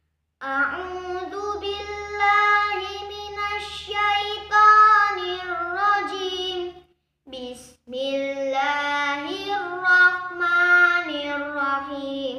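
A boy's voice chanting Quran recitation from memory in a melodic style, with long held notes and ornamented turns. It comes in two long phrases with a brief breath about seven seconds in.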